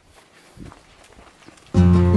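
Faint footsteps on a forest path, then background music with held notes starts suddenly and loudly near the end.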